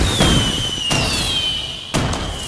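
Fireworks sound effect: sharp bangs at the start, about a second in and near the end, each with a whistle that glides slowly down in pitch.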